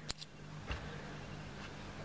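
Quiet room tone with a low steady hum, broken by a light click near the start and a fainter tick a little later.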